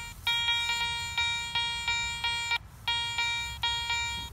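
Garrett Ace 400 metal detector sounding its target tone in short repeated beeps, about two to three a second with a brief gap past the middle, as its coil sweeps back and forth over a buried target: the detector is picking the target up.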